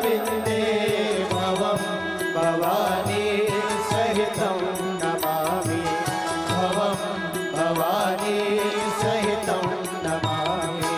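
Hindu devotional chant sung for the aarti with musical accompaniment: a wavering, ornamented vocal melody over a steady drone and a regular beat.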